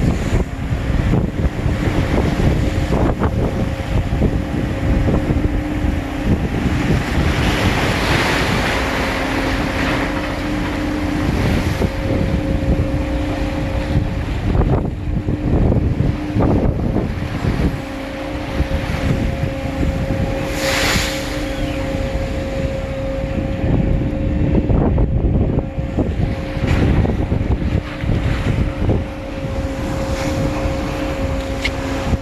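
Wind buffeting the microphone over the rush of a ship's churning wake and the low rumble of the vessel under way, with a steady mechanical hum that drops out and returns. A brief, brighter hiss rises about two-thirds of the way through.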